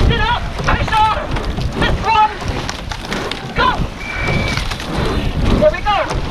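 Short shouted calls, roughly one a second, over rushing water and wind buffeting the microphone of a racing rowing boat. A short steady high tone sounds about four seconds in.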